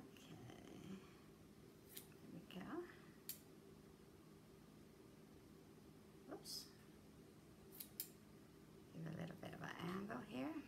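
Scissors snipping through ribbon ends, a handful of quiet, separate cuts spread out, two in quick succession about eight seconds in.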